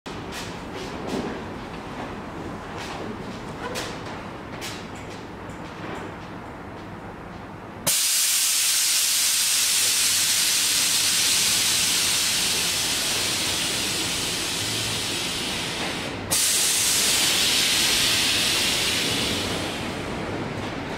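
Air suspension letting out compressed air as the car lowers: a loud hiss starts suddenly about eight seconds in, stops for a moment past sixteen seconds, then comes back. Before it there are only faint clicks.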